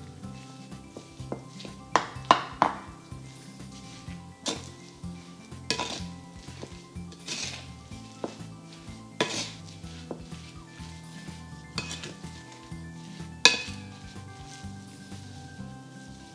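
A wooden spoon mixing raw ground beef with breadcrumbs, egg and chopped herbs in a ceramic bowl: soft mixing strokes with several sharp knocks of the spoon against the bowl at irregular intervals, the loudest near the end.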